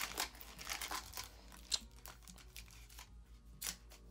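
Foil wrapper of a Panini Prism baseball card pack being torn open and crinkled by hand, with irregular crackles and small rips.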